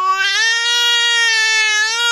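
An infant's long squeal held for about two seconds on a nearly steady high pitch, rising a little at the start and cutting off sharply.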